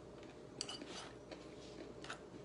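Faint clicks and scrapes of a fork and knife cutting food in an aluminium foil tray, a few small ticks with the sharpest a little over half a second in.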